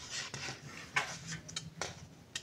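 Faint scattered clicks and paper rustles of a paper astrological calendar being handled and leafed through, about five light ticks over two seconds.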